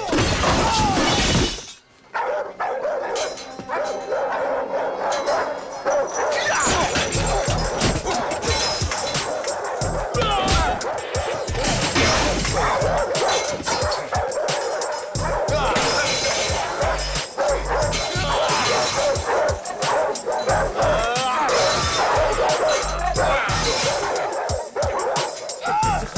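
Film fight soundtrack: a loud crash of breaking glass in the first second and a half, then dramatic music with dogs barking repeatedly over it and scattered impact thuds.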